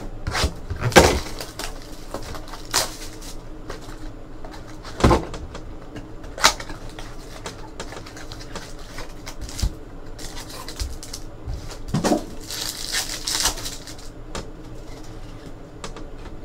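Hands handling a cardboard trading-card mini box and tearing open card packs: scattered taps, clicks and rustles, with a longer crinkling stretch about three-quarters of the way through as a pack wrapper is torn.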